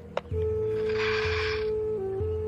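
Slow background music: a long held tone over a soft low pulse that repeats about once a second. A brief soft hiss rises and fades near the middle, with a small click just after the start.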